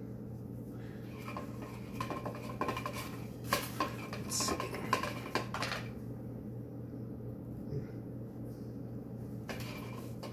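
Scattered clicks and scrapes of a long wooden hand spindle being rolled and wound while spinning wool into yarn, busiest in the first half and thinning out after about six seconds, over a steady low hum.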